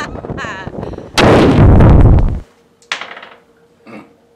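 A loud explosion boom, about a second long, that cuts off abruptly; a shorter, fainter burst follows.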